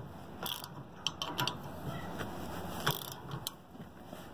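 Socket ratchet wrench clicking irregularly as it is worked on the tensioning bolt of a mobile home tie-down strap head, turning the bolt until its square section seats in the square slot.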